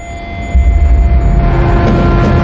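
Film trailer sound design: a deep rumbling drone under a few held tones that jumps sharply louder about half a second in.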